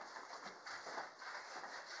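Faint, soft footsteps and shuffling on a wooden floor.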